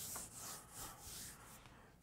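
A chalkboard being erased: faint back-and-forth rubbing strokes, about three a second, stopping about a second and a half in.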